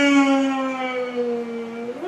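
A man's voice holding one long, loud vowel note, its pitch sinking slowly, ending near the close.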